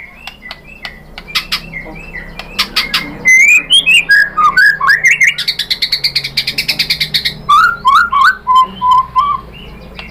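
White-rumped shama singing a fast, varied song of sharp clicking notes and gliding whistles, with a buzzy trill through the middle and a run of lower whistled notes near the end. The song is packed with mimicked phrases ("isian").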